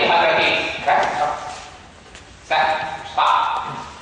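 Speech: a man lecturing, talking in short phrases with brief pauses.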